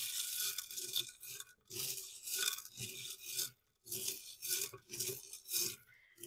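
Tarot cards being shuffled by hand: a string of short, dry rustling bursts with a couple of brief pauses.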